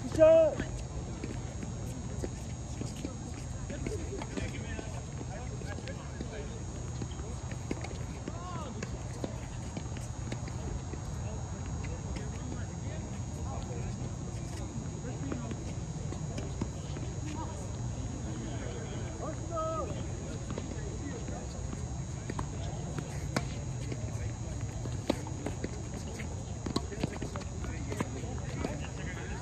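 Tennis being played on an outdoor hard court: scattered sharp pops of racquets striking the ball and shoes on the court, over a steady low rumble. A short loud voice call comes right at the start, and faint voices are heard now and then.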